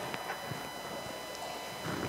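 A pause in amplified speech: faint room tone of a large hall with a steady electrical hum and a few soft scattered taps.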